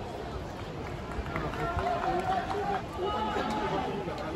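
Footballers shouting calls to one another during open play, over a steady low rumble of wind on the microphone.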